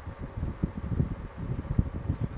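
Wind buffeting the microphone on a Honda Gold Wing trike riding at road speed: an uneven, gusting low rumble with the bike's running and road noise underneath.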